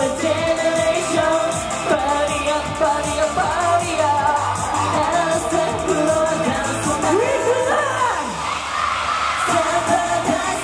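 Japanese idol pop song with a male group's vocals sung into handheld microphones over a backing track through the stage speakers, with a steady beat and bass.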